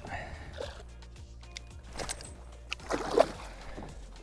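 Background music under faint water sloshing as a small muskie moves in a landing net held in the water beside a kayak.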